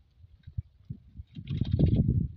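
Water sloshing and splashing around a man wading waist-deep as he gathers a wet cast net, a loud low rush building about a second and a half in.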